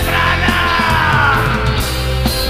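Loud rock band music with a long yelled vocal note sliding down in pitch over the band.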